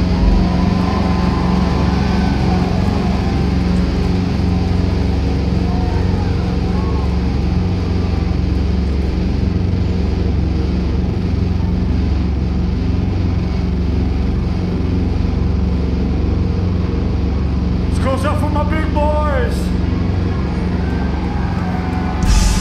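Steady low droning from the band's amplified stage rig, holding at one level, with faint voices underneath. A brief cluster of higher-pitched gliding sounds comes near the end.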